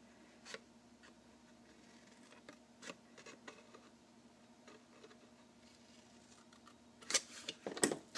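Small scissors faintly snipping through cardstock in a few short, sparse cuts. Near the end come louder clicks and rustling as the card is handled.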